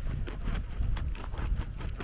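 A shoe scraping soil and grit away from the edge of an asphalt footpath: a quick run of short scuffs and clicks over a low rumble.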